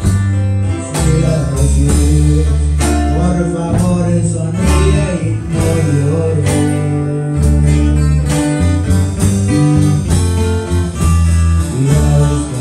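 Live acoustic band rehearsal: acoustic guitars strummed over a heavy, shifting low end, with a man singing into a microphone.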